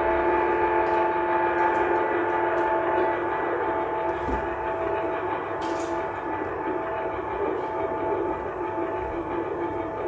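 A sustained drone chord of several steady, unchanging tones with no beat, from an experimental live music set, fading slightly after a few seconds. A few faint clicks sound over it.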